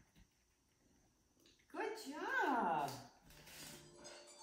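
A woman's drawn-out vocal sound, starting about two seconds in and sliding down in pitch for about a second, after a quiet start.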